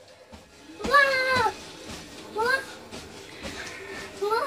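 Two high-pitched vocal cries, a longer one about a second in and a short rising one a little past midway, over faint music from the TV soundtrack.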